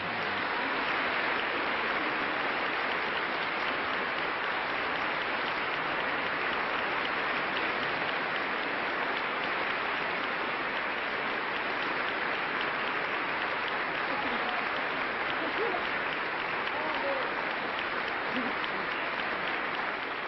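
Audience applauding steadily and heavily, with a few faint voices in the crowd.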